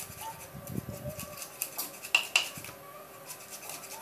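Raw rohu fish being cut against a boti, the upright curved blade of a floor-mounted cutter: soft scraping and slicing with scattered clicks. There are dull knocks in the first second and two sharp, louder clicks a little after two seconds in.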